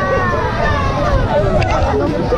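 Several riders' voices talking over one another, with a steady low rumble underneath from the moving coaster train and wind on the microphone.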